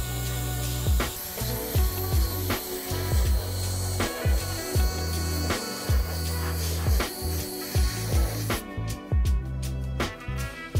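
Background music with a steady bass-drum beat, over the hiss of an airbrush spraying mold release into resin molds; the hiss stops near the end while the music carries on.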